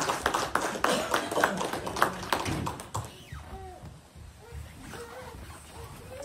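A small congregation clapping in a small room, a rapid scatter of hand claps that dies away about three seconds in, leaving a few quiet voices.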